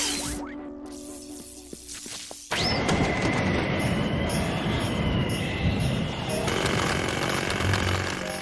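Cartoon soundtrack: a steady hum fades away, then about two and a half seconds in a sudden rising whoosh opens into a steady rushing blizzard-wind sound effect under music.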